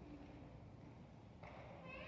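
Near-silent room tone. About one and a half seconds in, a faint, high, voice-like pitched sound begins.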